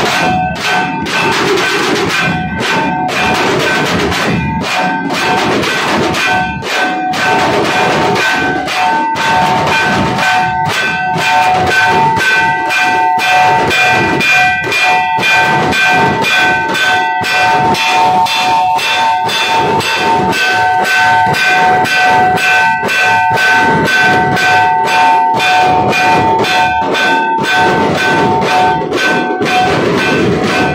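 Nashik dhol and tasha ensemble playing a fast, loud, driving rhythm: dense stick strokes on large dhol drums, with a steady metallic ringing held over the drumming.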